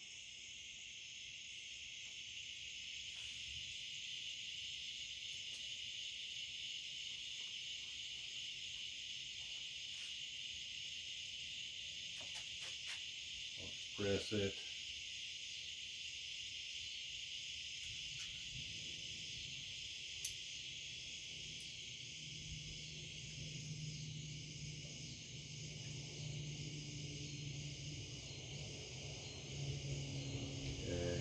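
Faint, steady high chirring of crickets throughout, with a few light clicks about halfway through and a short murmur of a man's voice.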